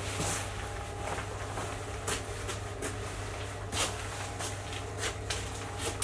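Footsteps and scuffs on a concrete garage floor, with scattered irregular knocks, over a steady low hum.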